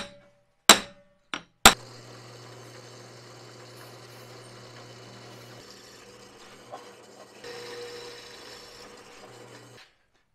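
A few sharp, ringing metal taps in the first two seconds, then a drill press running steadily as a twist drill bores holes through a round metal plate, the sound shifting about two-thirds of the way through and stopping just before the end.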